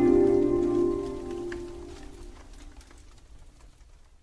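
Closing background music: a held, soft chord that fades away over about three seconds.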